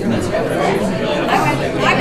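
A voice speaking over the steady chatter of many people in a large room.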